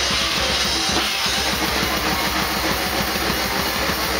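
Grindcore band playing live with the drum kit to the fore: rapid bass-drum strokes under a constant cymbal wash, with a brief drop about a second in.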